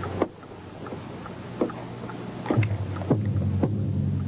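A low, steady droning hum that drops away about a quarter-second in and comes back about two and a half seconds in. About five sharp knocks land at uneven intervals over it.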